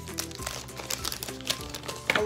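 Light background music with steady held notes, over the crinkle of a candy-bar wrapper being handled.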